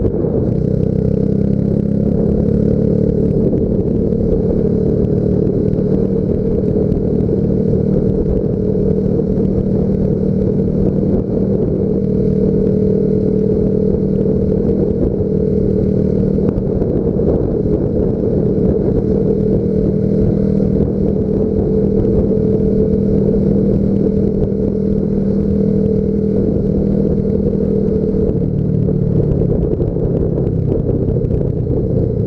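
Yamaha Factor 150 motorcycle's single-cylinder four-stroke engine running at a steady cruise, heard from the rider's seat through the camera's own microphone, its pitch holding even throughout.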